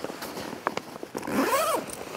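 Zipper on a fabric dive bag being pulled, with rustling and small clicks from handling the bag's straps and fittings. A short whine that rises and falls comes about one and a half seconds in.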